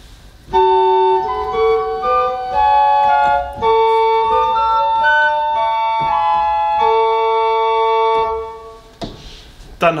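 Pipe organ built by Eduard Vogt in 1913, playing a short passage of steady, held flute-like notes on its Traversflöte, a 4-foot flute stop. The playing starts about half a second in and breaks off about a second and a half before the end.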